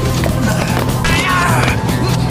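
Film fight soundtrack: background music over a steady low drone, with scattered blows and, in the second half, a man's cry of pain with a falling pitch.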